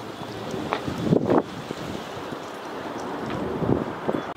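Wind buffeting the microphone, an uneven rushing noise with stronger gusts about a second in and again near the end.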